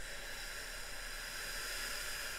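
A person's long, steady hissing out-breath through closed or pursed lips, starting abruptly.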